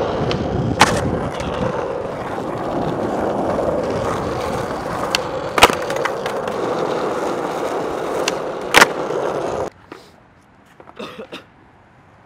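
Skateboard wheels rolling steadily over rough asphalt, broken by three sharp clacks of the board about a second in, midway and near 9 s, as tricks are popped and the board hits the ground. The rolling stops suddenly near the end, followed by a few lighter clacks.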